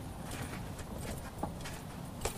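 A few faint horse hoofbeats clip-clopping at an uneven pace over a low steady background.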